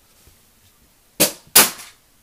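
Two loud, sharp knocks about a third of a second apart, a little over a second in, each dying away quickly.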